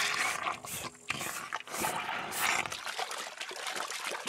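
Cartoon sound effect of water being sucked up as the dinosaur drinks the pond dry: an irregular rushing, liquid noise with a brief break about a second in.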